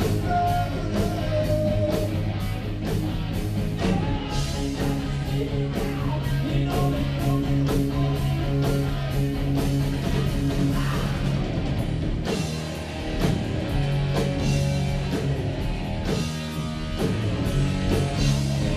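Live rock band playing: electric guitar over bass and a drum kit, with drum and cymbal hits keeping a steady beat. The band thins out briefly a little after the middle, then comes back in.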